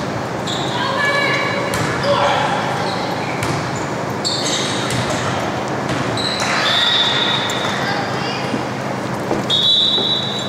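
A volleyball rally in a gym: the ball is struck sharply a few times, over crowd voices echoing in the hall. Short high squeaks come now and then through the play.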